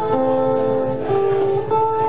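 Acoustic guitar picking a slow run of single ringing notes, about one every half second, as the closing bars of a blues cover, with applause following.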